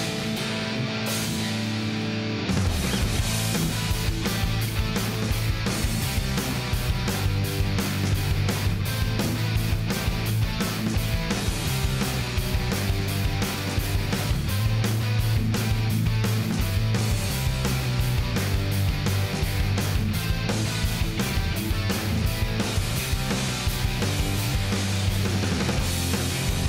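Background rock music with guitar; a steady drum beat and bass come in about two and a half seconds in.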